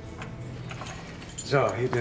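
Faint light clinks and rustling over low room ambience, then a man starts speaking about one and a half seconds in.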